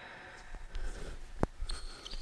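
Quiet indoor room tone with faint movement noises from a badminton player resetting his stance and racket, and one short, sharp click about a second and a half in.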